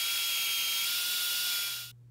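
Metal-cutting vertical band saw blade cutting a slot through a small metal part: a steady, high-pitched cutting noise with a thin whine. It stops shortly before the end as the cut is finished, leaving the saw's low motor hum.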